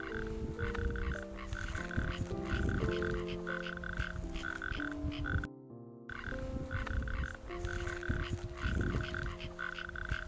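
A chorus of frogs calling in short repeated bursts, more than one a second, over soft piano music; the frog sound cuts out briefly about halfway through and then resumes.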